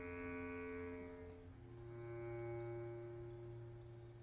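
Orchestra playing softly in sustained low chords. The chord changes about one and a half seconds in, swells briefly and then fades near the end.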